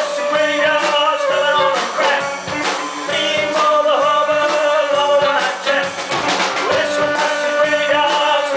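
Live blues-rock band playing with electric guitars, bass and drum kit, long held notes bending in pitch over a steady drum beat.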